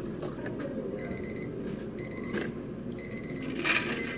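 Water poured from a plastic pitcher over ice into plastic cups, with an electronic beeper sounding repeatedly about once a second from about a second in. A short burst of noise comes near the end.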